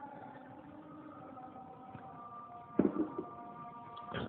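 A pause in speech: a faint steady hum of several tones, with one short, louder sound about three seconds in.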